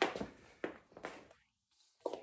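A handful of light knocks and rustles as a heavy rubber extension cord is shaken out and handled, the strokes spaced irregularly over about a second.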